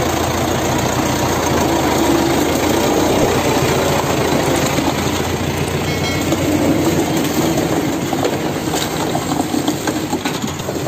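HMT 5911 tractor's diesel engine running steadily under load while pulling a heavily loaded sugarcane trailer, with rattling from the trailer.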